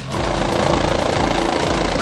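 Helicopter in flight: steady rotor and engine noise with a rapid flutter from the blades.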